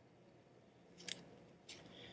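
Near silence, broken by two faint, brief rasps, about a second in and again near the end, as pheasant tail fibres are pulled off the feather's quill.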